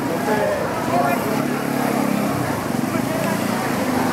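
People talking, voices running on without a break, over a steady low hum that swells from about one to two and a half seconds in.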